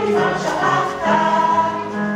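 A musical number: a group of voices singing together, holding notes over instrumental accompaniment.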